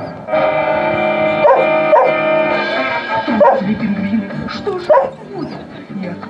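A dog barking about four times, once around a second and a half in, again at two seconds, then at about three and a half and five seconds, over music that holds one long chord through the first half.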